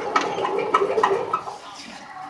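Fabric inspection machine running a roll of cloth past a yardage measuring wheel: a steady hum with rhythmic clicking about three times a second, which stops about one and a half seconds in as the run ends at about 130 yards.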